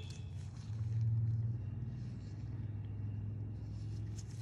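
A low, steady background rumble that swells about a second in, with a few faint clicks near the start and end.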